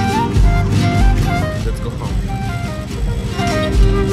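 Background music: a melody stepping up and down in pitch over a steady bass beat.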